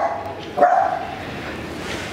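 A dog barking twice in the background, the second call longer and drawn out.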